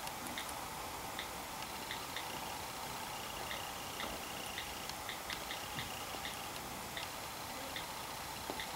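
iPad on-screen keyboard clicking as a password is typed, a short tick for each key press coming at an uneven typing pace, about a dozen in all, over a steady low hiss.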